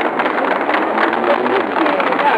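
A motor vehicle's engine running at street level, with voices faintly in the background.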